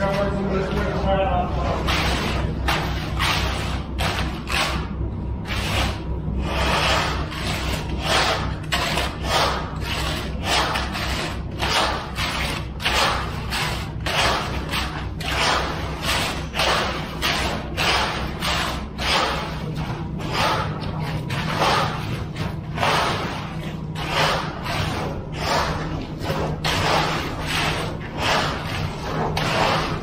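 A screed board being sawed back and forth across wet concrete, a rough scraping stroke about twice a second, over a steady low hum.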